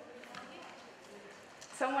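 Low, indistinct chatter of many people in a large room, then a woman's voice speaking loudly near the end.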